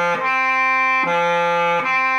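Bass clarinet alternating between an open G and a clarion D a wide leap above it, each note held just under a second. The D is played with the G's lower, more open tongue voicing, which makes it sound a little throaty and guttural rather than reedy.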